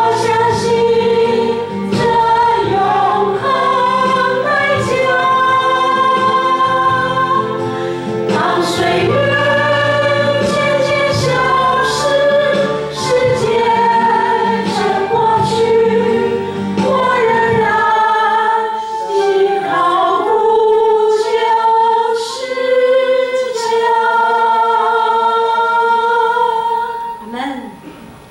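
A congregation and worship team singing a Christian praise song, with a drum kit and keyboard accompanying. About eighteen seconds in, the low accompaniment drops out and the voices carry on over lighter backing.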